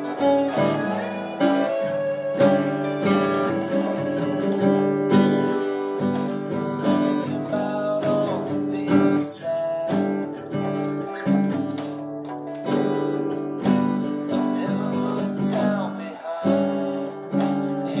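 Classical guitar, held upright and played like a cello, sounding strummed and plucked chords, roughly one struck chord a second.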